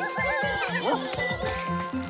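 Bouncy cartoon background music with a plucked bass line. Over it come high, warbling squeaks and whinny-like cartoon creature calls.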